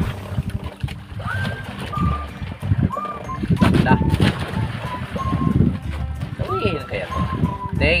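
A man's voice and background music with a held melodic line, over a steady low rumble of wind and boat noise.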